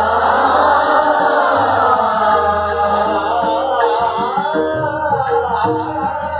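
A class of students singing a Hindustani classical composition in Raga Kedar together in unison, the many voices gliding between notes over the steady drone of a tanpura.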